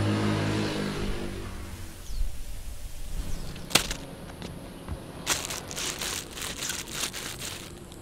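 A low drone fades out over the first two seconds. About four seconds in, a cellophane-wrapped flower drops onto a wooden deck with a single sharp tap. From a little past five seconds, a run of crisp crinkling clicks and footsteps on the deck boards follows for about two and a half seconds.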